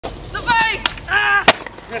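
Two sharp skateboard clacks, a lighter one and then a loud crack about one and a half seconds in, with two shouted calls from a person before and between them.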